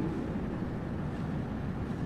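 Steady background room tone: an even low hiss and hum with no speech, and nothing sudden.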